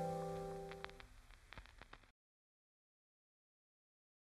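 Closing acoustic guitar chord of a song ringing out and fading away, with a few faint clicks as it dies. Then dead silence for the second half.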